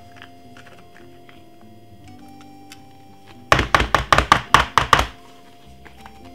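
A rapid run of about ten knocks over a second and a half, a plastic blender cup being knocked to shake blended green seasoning out onto chicken pieces, over faint background music.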